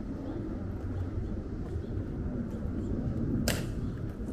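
A single sharp crack about three and a half seconds in, from a Tomb of the Unknown Soldier guard's drill during the changing of the guard, over steady low outdoor background noise.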